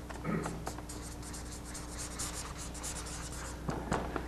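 Marker pen writing on a paper flip chart: a run of short, quick scratchy strokes as words are written out, over a steady low hum.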